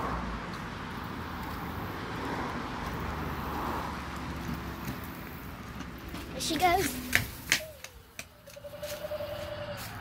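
Skateboard wheels rolling over a concrete driveway, a steady rumble for about six seconds. Then a child's brief high voice and a few sharp knocks.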